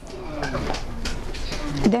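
A bird cooing during a pause in speech, a few falling calls over a low steady rumble.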